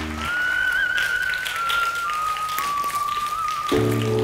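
A whistle-like music cue: one wavering tone that slowly falls in pitch for about three seconds, over faint tapping. The low steady backing music cuts out just after the start and comes back near the end.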